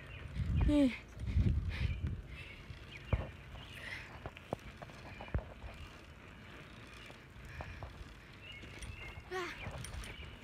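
A person's brief wordless vocal sounds near the start and again near the end, over low rumble from a handheld phone's microphone. A couple of sharp clicks fall in the quieter middle stretch.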